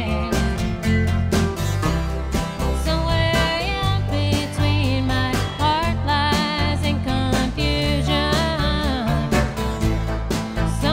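Live band playing a country-flavoured roots song: a woman sings the lead over electric guitar, bass and drums keeping a steady beat.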